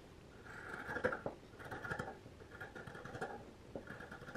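Scissors cutting through layered fabric along a curved seam, trimming the seam allowance down: about four faint rasping strokes, each with a small click of the blades.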